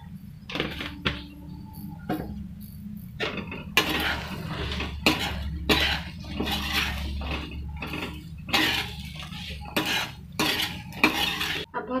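A slotted spatula scraping and tossing cut cluster beans and potato around a kadhai, in repeated irregular strokes that grow more frequent after the first few seconds. A steady low hum runs underneath.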